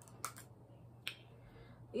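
A few short, faint clicks in a pause between speech: two close together just after the start and one about a second in, over quiet room tone.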